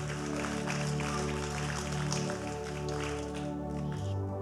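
Soft ambient keyboard pad playing sustained, held chords, moving to a new chord at the very end.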